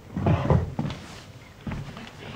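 A loud wooden knock and clatter of movement on a stage floor lasting about half a second, then a smaller knock near the end.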